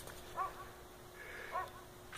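Two short, high-pitched animal squeaks, a little over a second apart.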